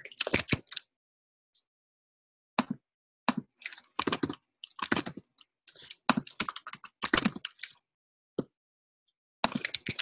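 Typing on a computer keyboard: quick clusters of keystrokes, each run lasting under a second, with short silent pauses between them.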